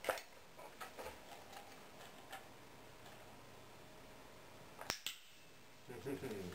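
Sharp single clicks from a dog-training clicker: one right at the start and another about five seconds in, with a few faint ticks between.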